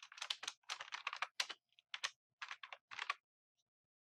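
Computer keyboard typing: a quick, uneven run of keystrokes that stops about three seconds in.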